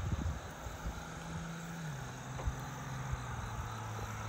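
A motor vehicle's engine running with a steady low hum that drops in pitch about halfway through.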